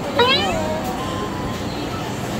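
A single short cat-like meow about a quarter second in, sliding down in pitch as it ends, over steady store background noise.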